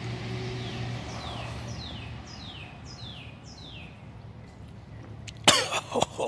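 A man coughs once, short and harsh, about five and a half seconds in, after a swig of straight vodka. Before that, a bird in the background repeats a short falling whistled note about six times.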